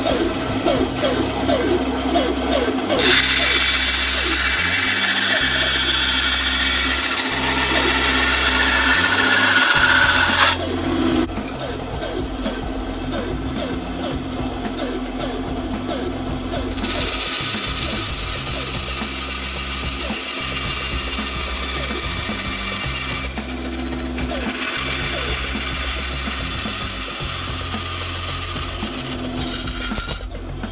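Bandsaw running and cutting through aluminium angle stock: a steady motor and blade sound, with two long stretches of harsh, hissing cutting noise, from about three seconds in to about ten, and again from about seventeen seconds to near the end.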